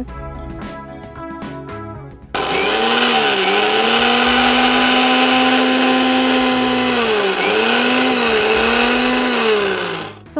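Electric kitchen mixer grinder blending jamun fruit for juice: it switches on suddenly about two seconds in and runs with a steady high whine, its pitch dipping briefly a few times before it winds down at the end. Background music plays before it starts.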